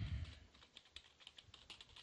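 Faint, rapid typing on a computer keyboard, about five keystrokes a second, as a word is typed out letter by letter, with a brief low rumble at the very start.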